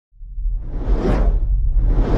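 Intro sound effects: two whooshes over a steady deep rumble. The first swells to a peak about a second in, and the second begins building near the end.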